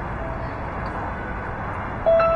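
Steady background hum of outdoor street noise, like distant traffic, with a faint held note of background music.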